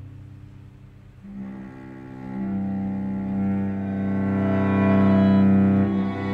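A string trio of two upper strings (violin and a violin or viola) and a cello playing a slow, sustained classical passage. It is soft at first; the instruments come back in after about a second and swell to a loud, held chord near the end.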